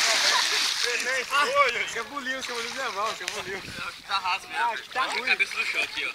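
A person plunging into shallow lake water, a big splash that dies away in the first half-second, followed by several people's voices calling out over the water.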